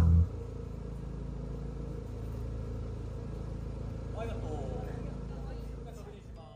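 Music playback cuts off just after the start, leaving a steady low machine hum. Faint voices come in briefly about four seconds in.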